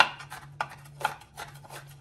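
Chef's knife chopping red Anaheim pepper on a bamboo cutting board: a few irregular knocks of the blade striking the wood.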